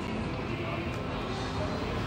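Steady casino background din: slot machine music and jingles mixed with distant chatter, while a slot's reels spin and stop.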